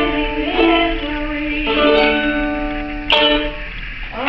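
Ukulele playing with a voice singing, the song closing on long held notes that stop about three seconds in.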